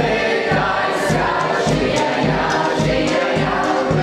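Music with a steady beat and a group of voices singing together: a Ukrainian folk song.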